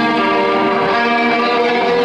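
Live rock band playing with loud electric guitars holding sustained, ringing chords that change pitch a couple of times.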